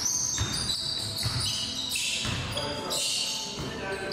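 A basketball bouncing several times on a hardwood gym floor as a player dribbles, with players' voices in the background.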